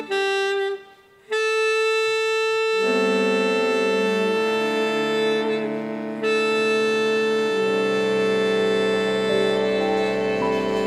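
Saxophone-led wind band playing sustained chords. After a short break about a second in, a single held note enters and the other parts join it near the three-second mark.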